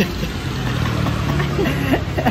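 A motor vehicle engine idling, a steady low hum, with a short burst of voice near the end.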